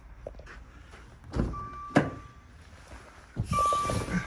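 Car door being opened and shut as someone climbs into a Maserati Ghibli: a low thump, then a sharp latch click, with the car's electronic chime sounding for about a second, and a rustle with the chime again near the end.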